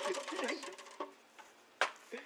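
Faint voices, with a light click about a second in and a single sharp click near the end.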